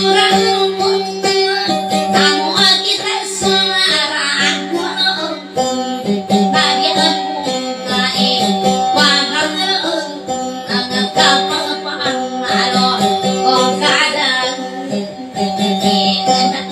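Electric guitar playing dayunday music: a quick plucked melody over a steady sustained low note, running continuously.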